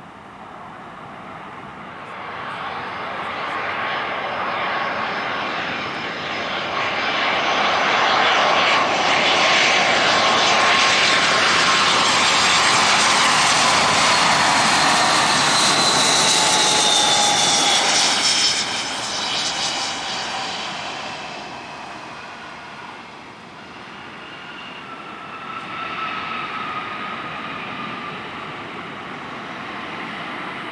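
Airbus A320 jet airliner on final approach passing close by: its engine noise builds, peaks with a falling whine as it passes, and drops off sharply about two-thirds of the way in. Quieter jet engine whine follows near the end.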